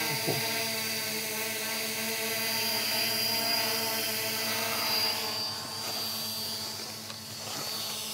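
Holybro X500 quadcopter hovering: a steady hum from its motors and propellers, with a thin high whine above it. The hum grows fainter for a couple of seconds after the middle, then comes back up a little.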